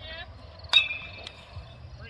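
Baseball bat striking a pitched ball: one sharp ping with a short ring.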